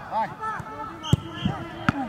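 Two sharp thuds of a football being struck in goalkeeper shot-stopping drills, the first about a second in and the second near the end.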